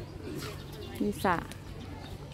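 A woman's voice saying one short word about a second in, over faint outdoor background.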